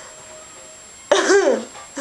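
A young woman's laugh, still giddy from the sedation after wisdom-tooth extraction: one loud, high burst a little after a second in, rising and falling in pitch, with another starting just at the end.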